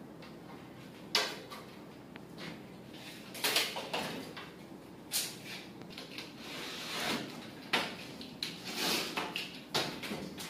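Plastic wall and ceiling panels being handled and fitted: intermittent short scrapes and clatters of panels sliding against each other and against the framing, coming every second or so.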